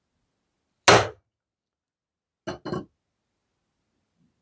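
Steel hammer striking a large ball-peen hammer whose ball rests on the pivot pin of a pair of pliers on an anvil: one hard metal clang about a second in, ringing briefly, then two lighter metallic knocks in quick succession near three seconds. The blows peen the pin to spread it and take the wiggle out of the loose jaws.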